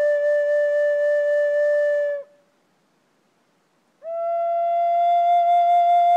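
Butch Hall Native American flute in G minor holding one long, steady note, which stops about two seconds in. After a short silence a slightly higher note swells in and is held to the end.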